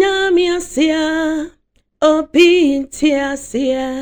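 A woman singing a gospel song solo and unaccompanied, in two held, melodic phrases split by a short breath-pause about a second and a half in.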